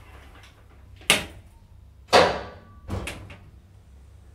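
Elevator doors banging shut and latching on a 1972 KONE ASEA Graham hydraulic elevator: three knocks about a second apart, the middle one loudest with a brief metallic ring, over a low steady hum.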